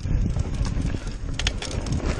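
Niner RIP 9 full-suspension mountain bike riding fast over rough dirt singletrack, heard from a camera mounted on the rider: a steady rumble of tyres and wind with rattling knocks from the bike over bumps, and a cluster of sharp clicks about one and a half seconds in.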